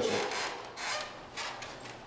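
A door being pushed open: a few short, irregular rubbing and scraping noises.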